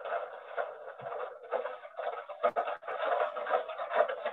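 Thin, rushing outdoor noise from the soundtrack of a horse-and-cart video clip played over a video call, with a few sharp knocks, one clear one about halfway through, as a draught horse pulls a cart along a woodland track.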